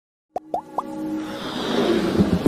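Logo intro sting: after a brief silence, three quick rising plop blips about a quarter second apart, then a swelling electronic riser that builds louder.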